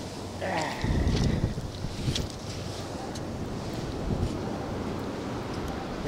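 Ocean surf washing in over the sand, foaming around the feet, with wind buffeting the microphone. The rumble is loudest about a second in, then settles to a steady wash.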